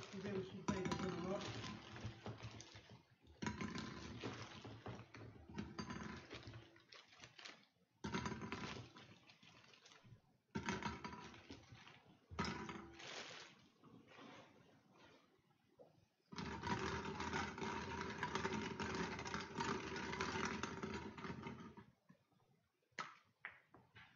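Small plastic draw balls rattling and clattering against a glass bowl as they are poured in from a plastic bag and stirred by hand. The noise comes in spells of a few seconds, with the longest stretch of stirring a little past the middle.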